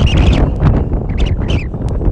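Wind buffeting the microphone in loud, uneven gusts, with scattered short crackles over it.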